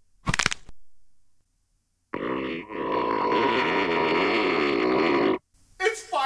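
A short, loud, sharp burst, then after a pause a buzzy sound with a wobbling pitch held for about three seconds, cut off abruptly. It is an edited-in sound effect.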